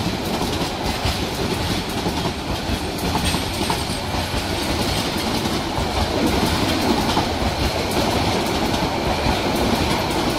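A Bangladesh Railway intercity train's passenger coaches rolling steadily past at close range: a continuous rumble, with the wheels clicking over the rail joints.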